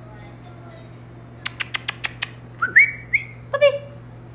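A person calling a puppy: a quick run of six kissing clicks, then a whistle that rises and holds briefly, twice, and a short high-pitched call near the end.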